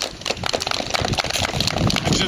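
Wind rumbling on the microphone, swelling about half a second in, with scattered light clicks over it.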